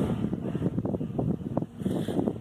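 Wind buffeting the microphone in uneven gusts, a rumbling rush that rises and falls irregularly.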